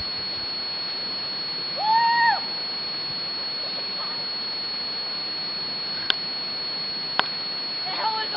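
A steady hiss with a thin high whine under it. About two seconds in comes a single distant call that rises and then falls, lasting about half a second. Two sharp clicks follow near the end.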